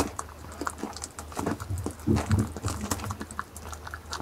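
A goat biting and chewing the soft flesh of a ripe jackfruit at close range: a run of irregular wet clicks and crunches, densest a little after halfway through, over a steady low hum.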